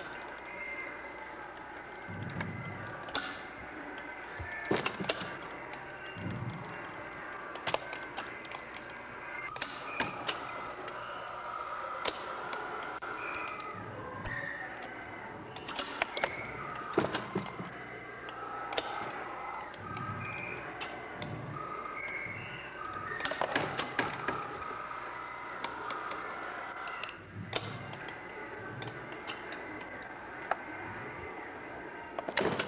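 Mechanism of a motorised gyroscope rig working as it tilts: irregular sharp clicks and knocks, some in quick clusters, with short squeaks over a steady low hum.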